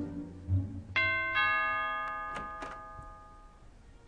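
Two-tone doorbell chime: a ding and a dong struck in quick succession about a second in, both ringing out and slowly fading.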